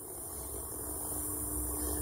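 A low, steady hum with a faint background hiss in a pause between speech.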